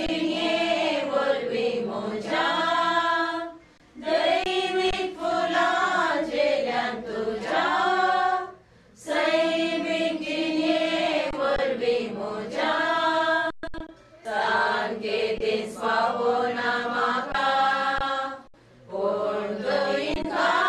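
A group of mourners sings a Konkani devotional hymn together, in phrases of about four seconds with short breaks between them.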